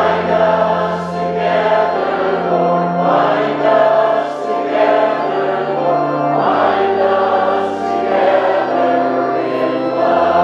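A congregation singing a slow hymn together over held accompaniment chords, the harmony shifting every few seconds.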